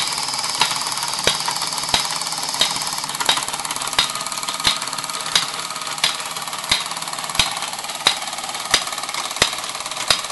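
Fleischmann overtype toy steam engine running and driving a line shaft and tin workshop models by belts. It makes a steady hissing whirr, with a sharp click about every two-thirds of a second from the driven machinery.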